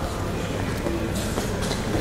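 Steady rumble and hiss of a large airport terminal hall, reverberant and unchanging.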